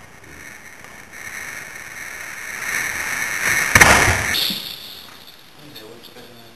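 A rushing noise that swells for about three seconds, then a sharp crash nearly four seconds in that fades within half a second.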